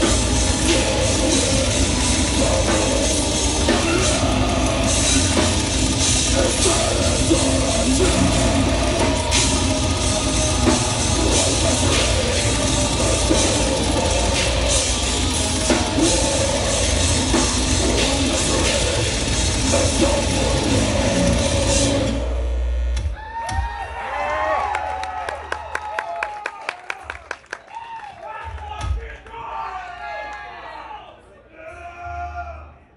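Death metal band playing live, with distorted guitar and a heavy drum kit at full volume. The song stops abruptly about 22 seconds in, and the audience cheers, whistles and claps.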